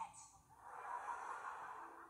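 Studio audience laughing. The laughter swells about half a second in and holds steady.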